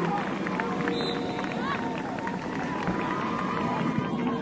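Many overlapping voices of players and spectators shouting and calling out on a soccer field, a busy, continuous din of short calls.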